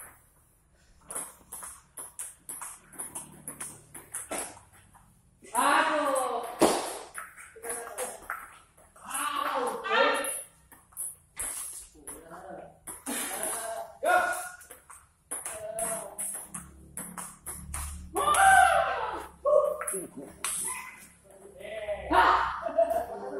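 Celluloid-style table tennis ball clicking off bats and the table in quick exchanges during a rally. Players' voices call out loudly several times between the strokes.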